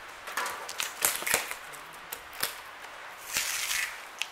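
Plastic packing straps and wrap being worked off a cardboard shipping box by hand: scattered clicks and rustling, with a short scraping hiss near the end as a strap slides along the cardboard.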